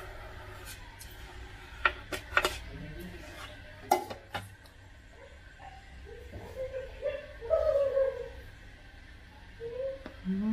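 A plastic ladle knocking sharply against a metal mixing bowl three times while custard cream is scooped out, then a louder wavering pitched vocal sound lasting about two seconds.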